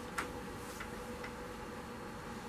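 Quiet room tone in a pause between speech: a faint steady hum, with a few soft ticks.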